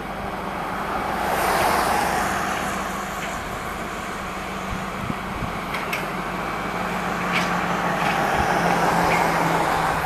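Flatbed tow truck's engine running with a steady low hum, under road traffic noise that swells about two seconds in.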